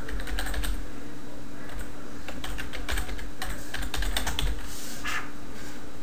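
Typing on a computer keyboard: an irregular run of quick key clicks as a file name is entered.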